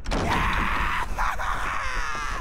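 Cartoon voices screaming and yelling, loud and strained, ending in a drawn-out falling cry.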